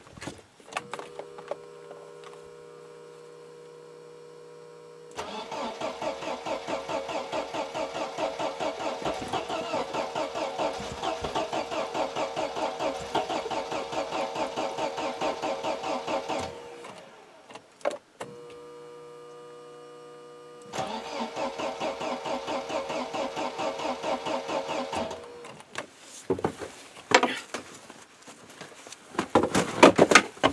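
Mercedes engine turned over by its starter motor in two cranking attempts, a long one of about eleven seconds and a shorter one of about four, with a steady hum before each; the engine does not catch. The owner takes this for fuel starvation in a car that has stood a long time, since it has spark. A few knocks follow near the end.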